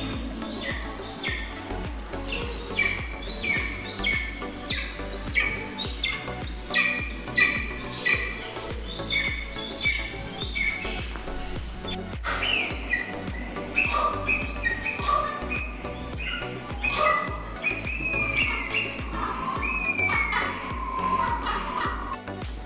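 Birdsong of short, repeated chirps that change about halfway through to longer gliding whistles, heard over background music.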